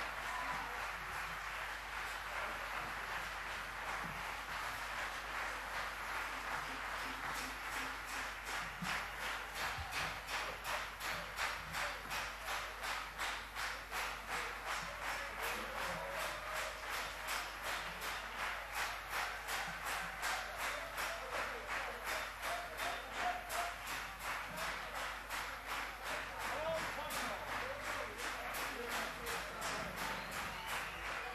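Concert audience applauding after the band introductions. About eight seconds in, the applause turns into rhythmic clapping in unison, a steady beat of between two and three claps a second, which runs on to the end.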